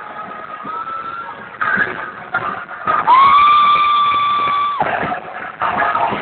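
Electric guitar at a rock concert holding one long high note for about two seconds, bent up into pitch at the start and dropping away at the end. It comes after a quieter, broken stretch of live sound and is heard through a phone's narrow, muffled recording.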